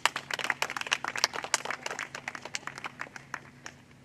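Small audience applauding: a dense patter of hand claps that thins out and stops near the end.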